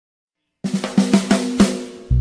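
Silence, then a little over half a second in a drum fill starts: a quick run of snare and kick hits, about six a second, leading into a music track.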